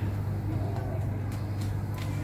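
Steady low hum, with a few faint clicks in the second half.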